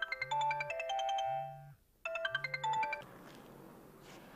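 Mobile phone ringing with a melodic ringtone: a quick run of high notes over a repeating low pulse, a short break a little before halfway through, then the tune starting again and cutting off about three seconds in, when the call is answered.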